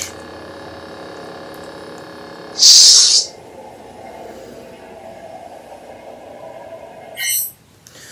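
Steady electronic hum from NeoPixel lightsabers' sound boards, made of several fixed tones. A loud hissing burst comes about three seconds in and a short crackling burst near the end, after which the hum stops.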